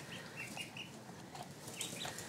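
Domestic ducklings peeping: a run of short, faint high peeps, several a second over the first second, thinning out after.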